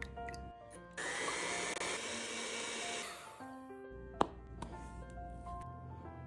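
Cream being whipped in a glass bowl: a loud, steady rushing noise that starts about a second in and fades out after about two seconds, over light background music. A single sharp click comes near the end.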